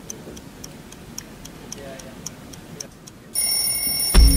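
A clock ticking, about three ticks a second. About three seconds in, a loud, high, steady ringing tone cuts in suddenly.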